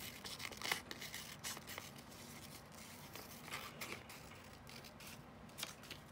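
Scissors snipping through thin paper in a few short, faint cuts, followed by light paper rustling and crinkling as the cut piece is handled.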